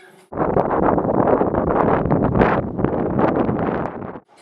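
Loud wind noise buffeting the camera microphone, drowning out any voices. It cuts in abruptly just after the start.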